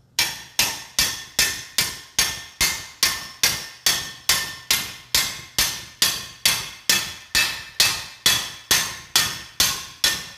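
Hammer driving a steel bolt through the pivot holes of a steel log grapple: steady, even blows about two and a half a second, each with a short metallic ring.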